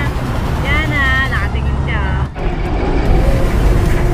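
A steady low outdoor rumble, most likely wind on the microphone with road traffic, under short high-pitched voices in the first two seconds. The sound dips briefly just past the middle, and the rumble then carries on.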